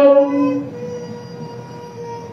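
The end of a long held, sung note of a Muslim call to prayer (adhan) over a loudspeaker. It fades out under a second in, leaving a fainter steady tone and background hiss.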